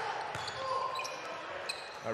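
Live basketball game sound in an arena: a steady crowd murmur, with a few short squeaks of players' shoes on the court and a ball bounce.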